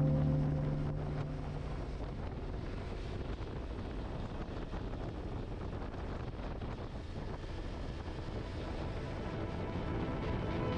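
Wind buffeting the camera microphone on a motorcycle riding at road speed, a steady rushing noise with the bike's running and road noise beneath it. Background music fades out over the first two seconds.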